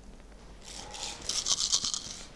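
A handful of cowrie shells rattling as they are shaken together in cupped hands for a divination cast. The clatter builds about half a second in and is loudest over the last half-second.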